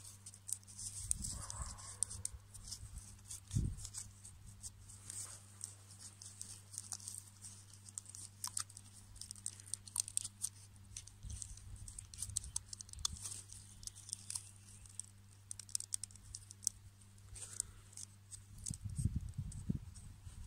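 Stiff, dry birch bark strips crackling and rustling as they are folded and tucked through one another by hand, with many small dry clicks and a few soft knocks.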